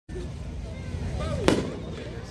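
A single firework bang from a nine-shot consumer cake, about one and a half seconds in, over a steady low background rumble.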